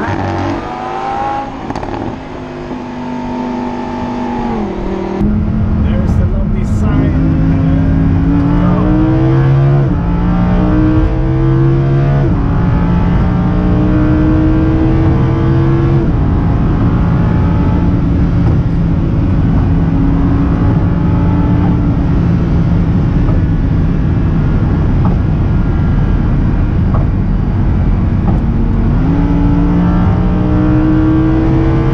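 Lamborghini Huracán LP610-4's naturally aspirated 5.2-litre V10 at full throttle. Its pitch climbs and drops back at each upshift several times in quick succession, holds at high, nearly steady revs at speed over constant road and wind noise, then climbs again near the end.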